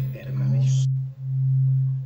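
A steady low pure tone that swells and dips in level about once a second. A faint trace of voice dies away a little before the middle.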